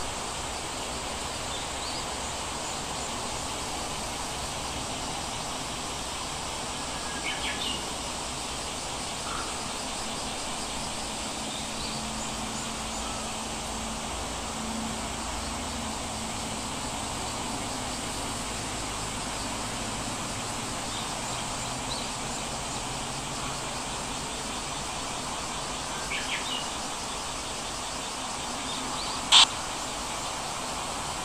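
Steady background hiss with a few faint, short high chirps, and one sharp click shortly before the end.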